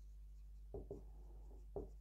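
Faint strokes of a felt-tip marker on a whiteboard as a word is written: a few short scratches, the clearest about three-quarters of a second in and another shortly before the end.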